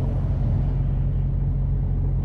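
Diesel truck engine idling, heard from inside the cab: a steady low rumble.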